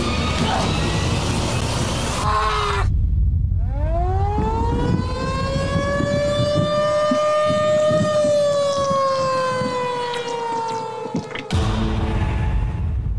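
Film-trailer soundtrack: a dense stretch of music and crashing noise gives way, about four seconds in, to a tornado warning siren. The siren climbs into one long wail that slowly sinks again over a low rumble, and breaks off near the end.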